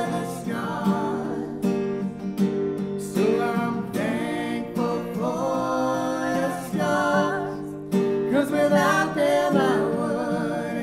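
A man and a woman singing a worship song together in sung phrases, accompanied by strummed acoustic guitar.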